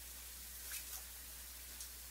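Quiet room tone with a steady low hum, broken by a couple of faint clicks about three quarters of a second in.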